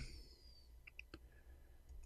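Near silence with a few faint, short clicks about a second in.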